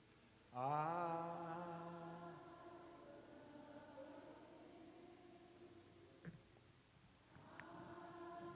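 A man's voice singing one long, slow held note, wavering at the start about half a second in, then held steady and fading gradually over several seconds; another held note begins near the end.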